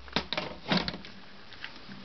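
Several light clicks and knocks in the first second as the metal-framed mesh screen lid of a terrarium is handled and lifted by a rubber-gloved hand.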